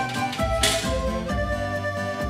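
Background music: held melody notes over a steady low beat.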